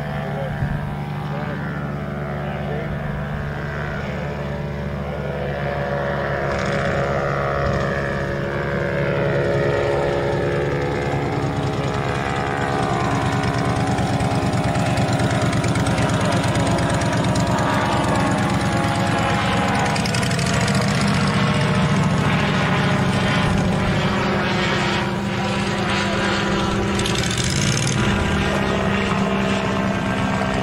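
A Legal Eagle ultralight's four-stroke V-twin Generac engine and propeller running steadily as the plane comes in and rolls past close by. The engine grows louder toward the middle, and its pitch slides down a little as it goes past.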